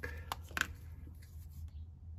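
A few short clicks and taps of small handling: a felt-tip marker's plastic cap being pulled off and set down on the bench mat, two sharp clicks close together near the start and a fainter tick later.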